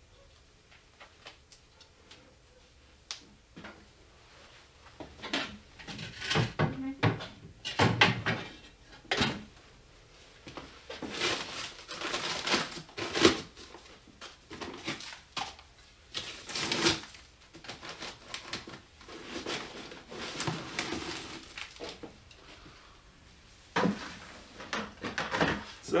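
A long-handled shovel scraping and scooping dry mortar ingredients and tipping them into a plastic bucket: a run of irregular gritty scrapes and knocks that starts about five seconds in.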